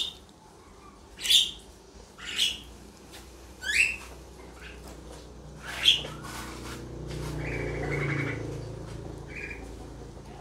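A bird chirping: a series of short, sharp, high calls about a second apart over the first six seconds. A low rumble then swells and fades about seven to nine seconds in.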